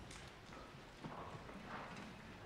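A few soft knocks and clicks, like footsteps and instruments being handled, over the quiet hiss of an auditorium while the stage ensemble waits between pieces.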